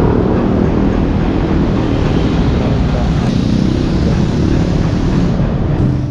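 Loud, steady rumble and hiss of road traffic close by, which cuts off abruptly near the end.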